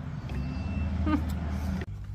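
Motorized equine dental float running against a donkey's teeth, a steady low hum that cuts off abruptly near the end.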